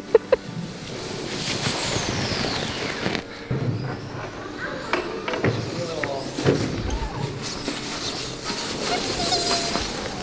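Sled sliding down a packed-snow slide: a steady rushing scrape, with a high squeal falling in pitch about two seconds in and people's voices in the background.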